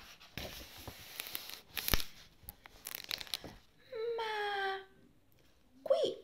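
Crinkling and rustling of a wrapper being handled, with sharp crackles, for about three seconds. A little after that a voice holds one short pitched note for about a second.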